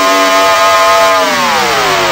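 Drum and bass track in a breakdown: the beat and bass cut out, leaving one held electronic synth note that slides steadily down in pitch over the last second.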